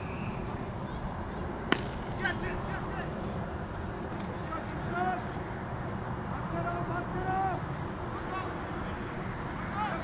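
Cricket bat striking the ball: one sharp crack about two seconds in, followed by players' short shouts and calls as the batters run.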